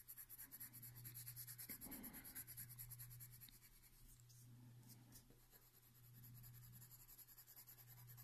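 Faint scratching of a yellow-orange coloured pencil shading on drawing paper in quick, short strokes; it eases off midway and picks up again near the end.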